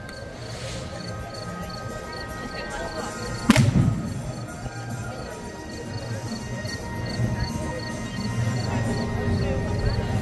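Music playing, with one sharp loud knock about three and a half seconds in.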